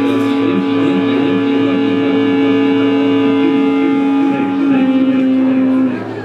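Live psychedelic rock band playing a loud, droning held chord over drums, with electric guitar in the mix. The lower held note shifts slightly near the end.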